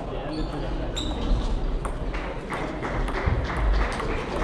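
Table tennis balls clicking sharply and irregularly off bats and tables, over a steady hum of voices in a large hall.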